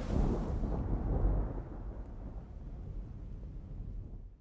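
A low, noisy rumble that fades away gradually over a few seconds.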